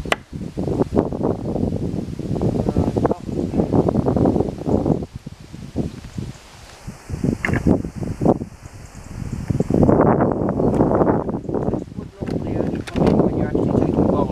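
Wind buffeting the microphone in an uneven low rumble. Right at the start a carving axe strikes a wooden spoon blank in one sharp knock, and a few fainter knocks follow later.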